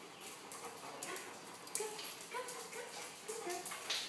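A dog whining in several short, high notes, with scattered clicks and rustling.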